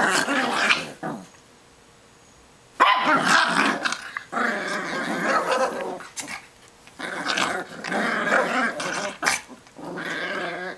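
Small dogs play-fighting and growling in long rough bouts, with a quiet break of about a second and a half shortly after the start.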